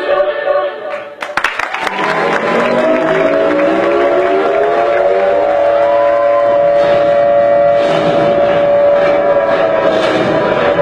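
Singing with musical backing. After a brief dip and a few clicks, the voices climb slowly into one long held note.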